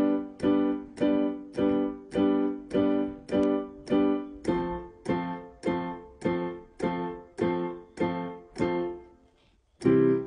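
Electronic keyboard on a piano sound, played as full chords with both hands, the same chord in each hand. It strikes steadily about twice a second: eight strikes of one chord, then eight of another from about halfway, in a major-chord change exercise. The playing stops about a second before the end.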